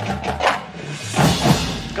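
Drum corps percussion section, with marching snares, tenors, bass drums and front ensemble, playing a passage of hits heard close up, the loudest cluster about halfway through.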